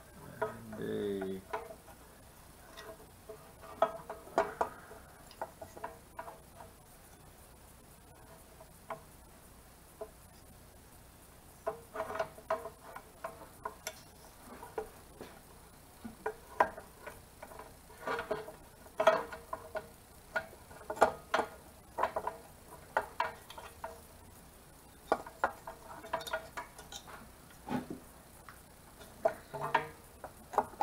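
Metal clicks and light clinks of engine parts and hardware handled on an air-cooled VW engine case as a part is set down over its gasket and fitted onto its studs. The clicks come in scattered clusters that thicken in the second half, with a short pitched squeak about a second in.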